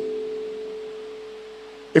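A steady, pure ringing tone, slowly fading over the pause, with a few fainter lower tones beneath it.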